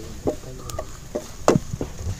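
Long metal spatula scraping and knocking against a steel kadai while stirring frying shallots, giving several sharp clinks, the loudest about one and a half seconds in. Short animal calls sound in the first second.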